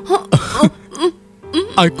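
A choked, halting crying voice in short broken bursts, over soft background music with long held notes.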